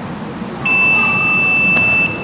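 A long, steady, high-pitched signal tone that starts about half a second in and holds evenly for about a second and a half, sounding over the sports hall's background noise during a karate bout.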